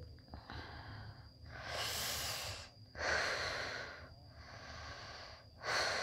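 A person breathing loudly and heavily: five rushing breaths of about a second each, in and out in a steady cycle. A faint, steady high-pitched whine runs underneath.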